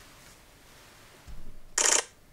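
Quiet room, then a soft knock about a second and a half in and a short hissy burst near the end, as a hand takes hold of a mirrorless camera on its tripod.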